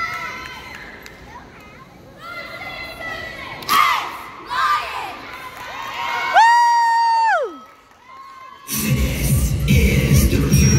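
A girls' cheer team shouting and cheering in short bursts, then one long high-pitched call held for about a second that drops away at its end. Loud music starts near the end.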